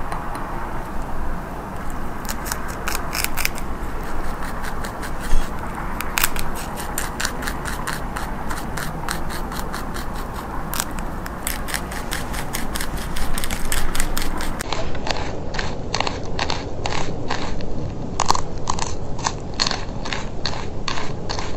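Eastern cottontail rabbit chewing a raw kale stem close to the microphone: rapid, crisp crunches, several a second, running on without a break.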